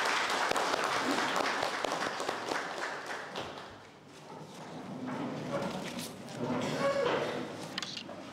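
A roomful of people applauding, the clapping dying away about four seconds in, followed by low, indistinct talk.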